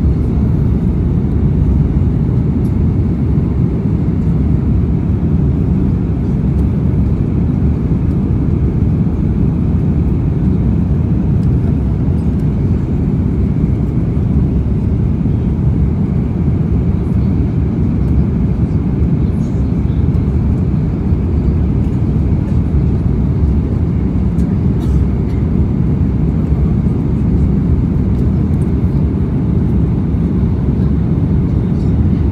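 Steady low roar inside the cabin of an Airbus A340-500 climbing out after takeoff: its Rolls-Royce Trent 500 engines and the rush of air over the fuselage, heard by the wing. The sound holds level throughout with no changes in thrust.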